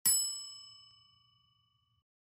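A single bell ding, the sound effect for a notification bell icon being clicked, struck once and ringing out to nothing within about a second.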